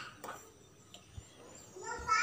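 Mostly quiet, with a faint knock about a second in. A high-pitched voice trails off at the start and another begins near the end.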